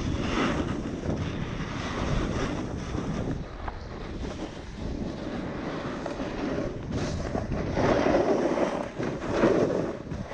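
Wind buffeting the microphone over the scrape and hiss of edges sliding through snow on a fast downhill run. The snow noise swells louder in surges near the end, in the softer tracked-up snow among trees.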